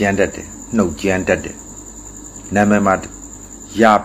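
A man speaking Burmese in short phrases with pauses between them, over a steady high-pitched insect trill, typical of a cricket, that never stops.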